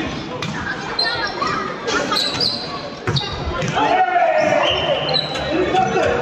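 A volleyball being struck and bouncing during a rally: a few sharp smacks in the first three seconds, with players calling out, all echoing in a large sports hall.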